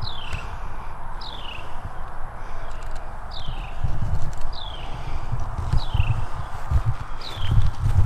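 A bird repeating a short downward-slurred call about once a second, over a low rumble with scattered thumps.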